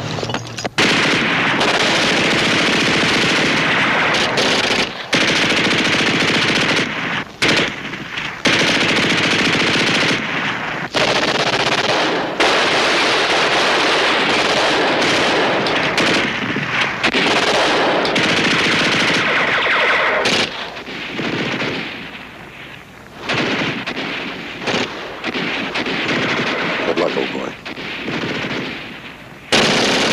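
Sustained machine-gun and rifle fire of a firefight, running almost without a break apart from short lulls, then thinning to quieter, more scattered fire for much of the last third before swelling again at the very end.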